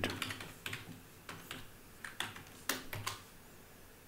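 Computer keyboard typing: a string of irregular key clicks, fairly quiet, as a word is typed into a code editor.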